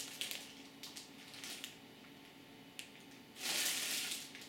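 Plastic bread-roll bag crinkling and rustling as it is handled, in a few short bursts with a louder rustle near the end.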